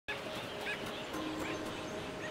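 Birds giving a few short chirps over a steady soft natural background, with faint clicks and low steady tones underneath.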